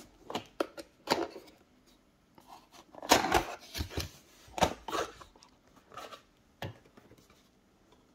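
Cardboard box being opened by hand: a series of knocks, scrapes and rustles as the lid and flaps are pulled back. There is a longer scraping rustle about three seconds in.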